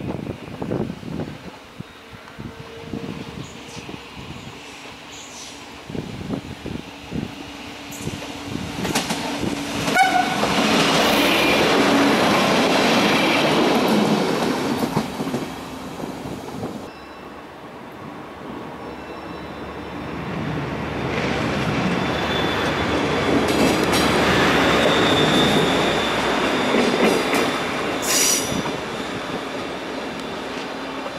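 Stadler GTW 2/6 diesel railcar approaching and running past, its running noise swelling to a loud pass from about ten seconds in, then dying away. Train running noise builds again for a second loud pass in the latter half, with a thin high tone and a brief high wheel squeal near the end.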